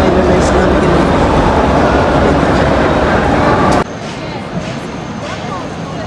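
Crowd noise of many people walking and talking in a large hall, a dense rumble with voices in it, cutting off suddenly about four seconds in to a quieter open-air crowd murmur.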